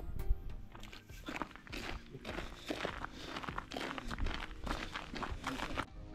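Footsteps walking on a snow-covered path, an irregular series of short steps, with music playing underneath.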